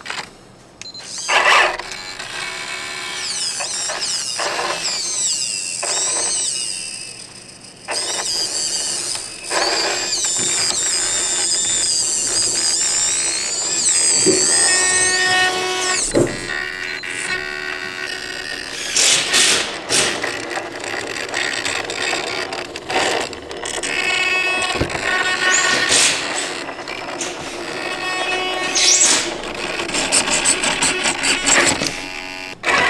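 Small electric motors of an RC rock crawler whining as a 299LP winch reels in its line and the truck crawls up a rock, the pitch rising and falling with the throttle, with a few sharp knocks along the way.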